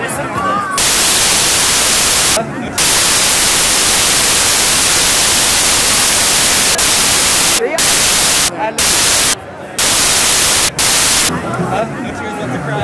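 Loud, even static hiss that drowns out the crowd, switching on and off abruptly and dropping out briefly several times, when voices from the crowd come through.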